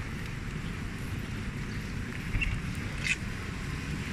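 Outdoor city street sound heard on a hand-held camera while walking: a steady low rumble of traffic and wind on the microphone, with two brief sharp sounds about two and three seconds in.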